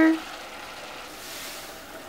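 Pork ribs sizzling steadily in a hot stainless steel pot: an even hiss as vinegar and sugar go in over the browned meat.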